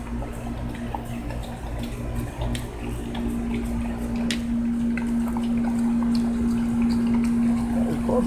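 Steady low mechanical hum over a low rumble, growing louder about three seconds in, with scattered small clicks.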